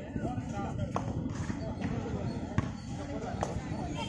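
Voices of players and spectators at an outdoor kabaddi match, with a few sharp impacts about a second in, midway and near the end.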